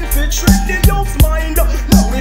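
Digital reggae track playing: a heavy bassline and a steady drum beat under a vocal.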